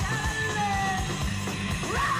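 A live rock band playing electric guitars, bass and drums with a fast, steady drum beat, recorded on a camcorder from within the crowd.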